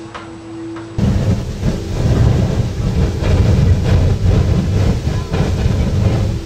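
A geyser erupting close up: a loud, rough rushing of water and steam jetting out, with splashing, that cuts in suddenly about a second in after a quieter steady hum.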